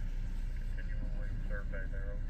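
Steady low rumble of a car's engine and road noise inside the cabin, with a faint, thin voice coming over a radio scanner in snatches, mostly in the second half.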